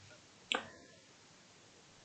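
A single short, sharp click, like a snap, about half a second in, against near silence.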